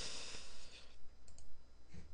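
A soft breathy hiss at the microphone in the first second, then a couple of faint clicks from a computer mouse a little past the middle.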